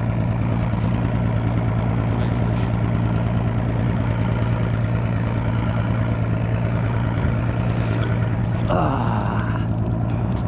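Boat's outboard motor running steadily with an even low hum. A brief rushing noise comes about nine seconds in.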